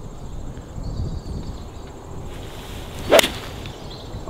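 A golf iron swung at a ball: a brief swish, then one crisp, loud strike of clubface on ball a little after three seconds in.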